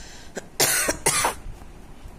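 A person coughing twice in quick succession, the two short coughs about half a second apart, just after a faint click.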